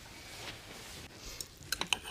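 Knives and forks clinking against dinner plates, several short clicks in the second half over quiet room sound.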